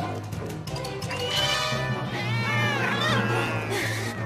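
Cartoon soundtrack music with a high, wavering animal-like cry: several squealing pitch glides that slide up and down, starting about a second in and fading near the end.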